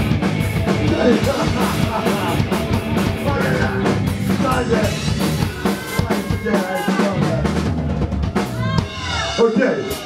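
Punk band playing live on drum kit and electric guitars, loud and dense; the song ends with about a second to go.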